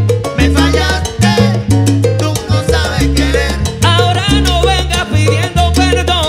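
A live salsa orchestra playing: trombones, piano, bass and percussion over a steady pulsing bass line.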